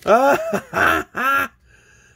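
A man laughing with excitement: three short bursts of laughter over about a second and a half, then stopping.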